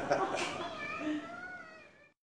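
People laughing, followed by a high, wavering, drawn-out voice-like sound that fades away.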